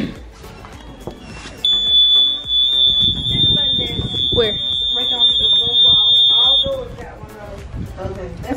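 Door-open alarm on a sliding glass patio door: one steady high-pitched beep, held for about five seconds, then cut off suddenly, signalling that the door to the pool area has been opened.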